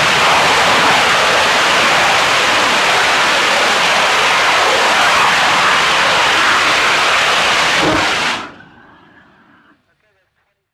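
BLK3 rocket engine firing on a tethered hold-down test: a loud, steady roar that cuts off sharply about eight seconds in at engine shutdown, followed by a faint tail dying away over about a second.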